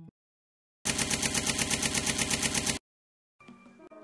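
A rapid, evenly paced rattle of about seven beats a second, lasting about two seconds, that starts and stops abruptly between two short silences. Light music comes back near the end.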